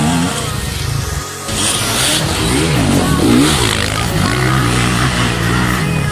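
Enduro motorcycle engines revving, the pitch sweeping up and down repeatedly as the riders work the throttle, then holding a steadier note near the end.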